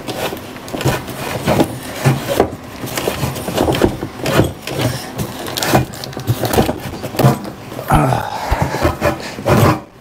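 Cardboard and styrofoam packaging rubbing, scraping and knocking as a heavy boxed part is worked out of a foam-lined shipping box, in a string of irregular knocks and scuffs.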